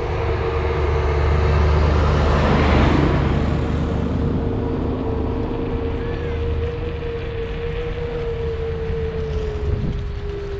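Wind rush and road noise on a moving vehicle-mounted camera, with a steady whine under it that sinks slightly in pitch near the end. The rush swells about two to three seconds in, as the camera goes past a coach bus.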